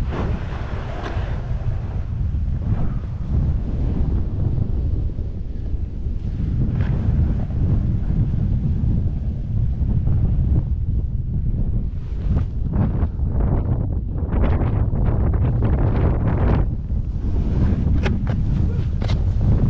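Wind rumbling on the microphone as a splitboard rides down snow. In the second half, the board's edges scrape the snow in a series of short rasps.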